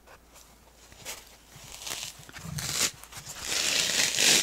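Needle-felted wool picture being peeled off its foam felting pad: a dry ripping rustle of wool fibres pulling free of the foam. It starts faint about a second in and grows louder and more continuous toward the end.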